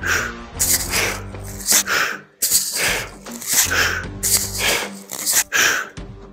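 A person breathing hard and rhythmically while swinging a kettlebell, a sharp breath roughly once a second, over steady background music.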